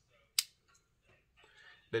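Metal oil-diffuser necklace locket clicking shut: one sharp click about half a second in, followed by faint handling rustles.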